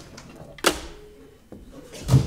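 A telephone receiver put down on its cradle: one sharp clack with a brief ringing tail, followed by a faint click.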